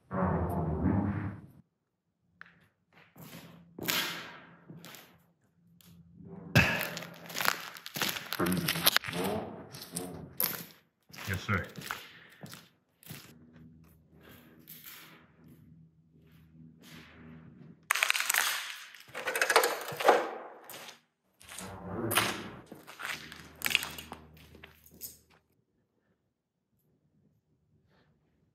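Irregular thuds, sharp cracks and crunching of debris being trodden on and knocked about in an enclosed room, with scraping and rustling between the knocks.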